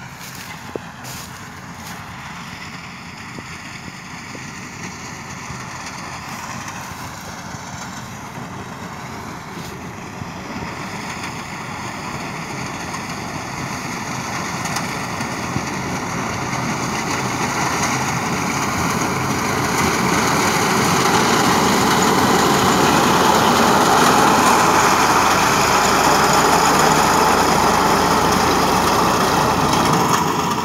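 Tractor engine running under load as its front-mounted reaper cuts standing sorghum stalks. It grows steadily louder as the machine approaches and is loudest and steady over the last third.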